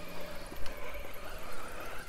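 Radio-controlled Axial Capra rock crawler driving over rocks, its Spektrum 2100kV sensored brushless motor and geared drivetrain giving a steady whine.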